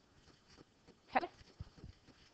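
Quiet room tone broken by one short voice sound about a second in, followed by a soft low thump.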